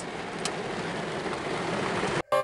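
Steady hiss of rain falling on a car, heard from inside the cabin, with one faint click about half a second in.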